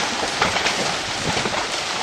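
Many seabirds plunge-diving into the sea, a dense patter of splashes hitting the water.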